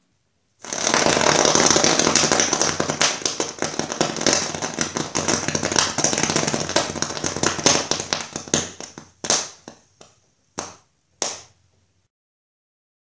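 A potassium permanganate pyrotechnic mixture burning fiercely, a loud crackling hiss full of sharp pops as it spits burning particles, for about eight seconds. It then dies down into three short separate spurts near the end.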